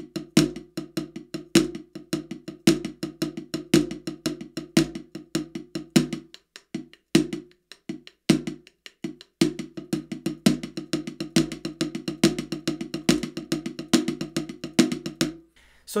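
Drumsticks playing a fast triplet shuffle hand pattern on a rubber practice pad, with regular louder backbeat strokes. The pattern thins to a few strokes for about three seconds midway, then resumes and stops just before the end.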